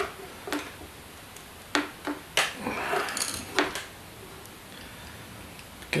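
A few sharp, scattered metallic clicks and taps, with a short rub about halfway through, as a pin tool turned with a screwdriver tightens the end cap of a Sky-Watcher NEQ6 mount's RA axis.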